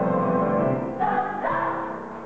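A group of children singing together as a choir, holding long notes. The notes change about halfway through.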